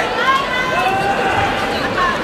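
Several voices in a large hall calling out in drawn-out, high-pitched shouts over a background of crowd chatter.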